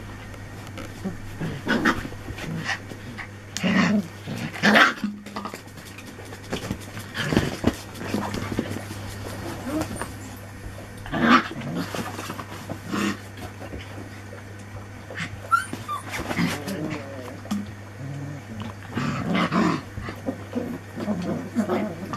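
Four-week-old Anglo Wulfdog puppies playing together, giving short vocal sounds in scattered bursts, over a steady low hum.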